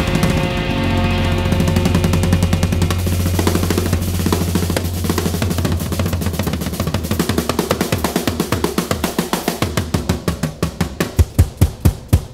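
Live rock band's drum kit playing a fast drum roll over a held bass note. About five seconds in the held note drops away, leaving the drums, whose strokes slow down and grow louder toward the end.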